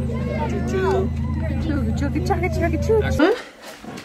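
Steady low engine hum of a ride-on train, with people's voices over it; it cuts off abruptly about three seconds in.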